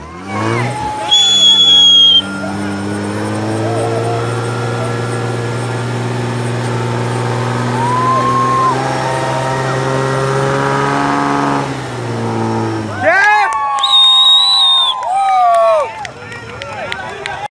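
Off-road 4x4's engine held at high revs under heavy load for about twelve seconds, its pitch creeping slowly upward as the truck claws through a deep mud rut, then dropping off about thirteen seconds in. Shouting voices and a shrill whistle-like tone come near the start and again near the end.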